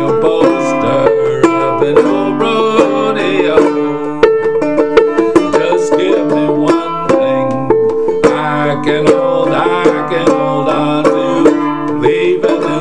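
Gold Tone open-back five-string banjo with Nylgut strings, tuned aDADE, played clawhammer style: a steady, rapid stream of downstroked notes and drone-string thumbs in an instrumental passage.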